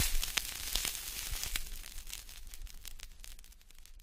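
Crackling noise full of sharp, irregular clicks, loudest at the start and fading steadily until it dies away near the end.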